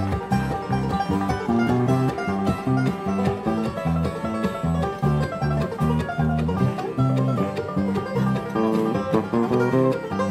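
Live bluegrass band playing an instrumental passage: banjo picking with mandolin and electric bass, many quick plucked notes over a steady bass line.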